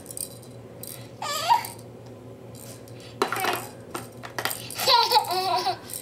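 A toddler's short high-pitched vocal sounds and laughter, with a clatter of hard plastic toy pieces a little past halfway.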